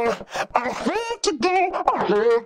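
A sung vocal line run through an overdrive whose drive is modulated quickly in a repeating rhythm, so the distortion pulses. The distorted band is being dragged down into the lows and low mids, which makes the vocal sound looser and less punchy than when only the mid-range is distorted.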